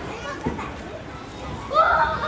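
Children's voices over background chatter, with a louder high-pitched child's call near the end.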